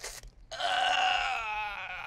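A person's single long, high-pitched drawn-out vocal sound, a moan or whine that starts about half a second in and wavers near the end.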